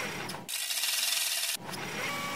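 Transition sound effect under an ad bumper card: a steady mechanical rattling, rasping noise, turning into a thin hiss for about a second in the middle.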